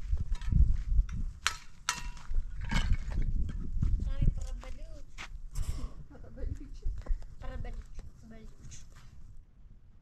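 Block-laying work on cement blocks: a run of sharp knocks and scrapes over a low rumble, with people talking, dying away near the end.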